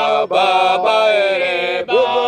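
Several voices singing a Shona church hymn a cappella, holding long notes in harmony. There are short breaks for breath about a quarter-second in and again near the end.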